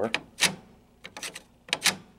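Sharp metal clicks and clacks from a pinball machine's steel lockdown bar and its latch as they are handled: a loud click about half a second in, a few lighter ticks, then a close pair of clicks near the end.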